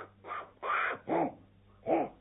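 Monkey chattering: four short, shrill calls, the second one the longest.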